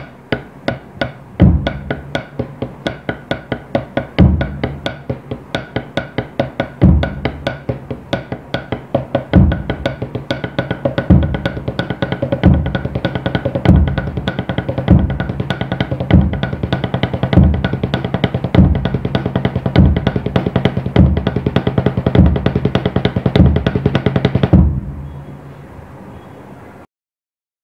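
Drumsticks playing a double paradiddle on a rubber practice pad, with a kick drum thumping on the first note of each group. The tempo speeds up steadily until the playing stops about 24 seconds in, leaving a short fading ring.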